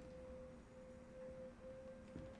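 Faint single steady pure tone held throughout, with a brief break about one and a half seconds in: a sustained note in the TV episode's soundtrack playing quietly.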